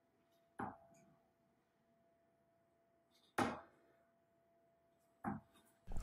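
Three darts thudding into a Winmau Blade 5 bristle dartboard one by one, a couple of seconds apart, the second strike the loudest.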